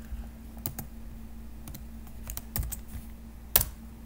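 Typing on a computer keyboard: scattered, irregular keystrokes, with one louder click about three and a half seconds in.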